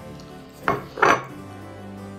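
Two sharp clinks of a white ceramic plate knocking on a wooden table, about a third of a second apart, the second ringing a little longer, over soft background music.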